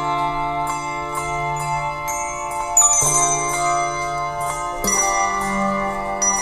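Handbell choir playing a slow hymn arrangement: chords of handbells struck every second or so and left to ring on, over deep bass bells held for a few seconds at a time.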